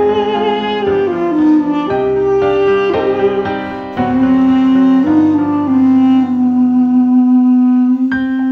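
Armenian duduk playing a slow, mournful melody over piano chords. In the second half the duduk settles into long held low notes while the piano's bass fades out near the end.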